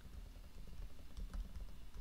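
Computer keyboard being typed on: a run of faint, quick keystrokes.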